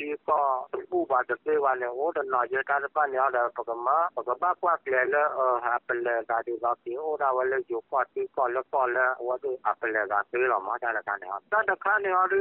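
Speech only: one voice speaking continuously, with short pauses between phrases.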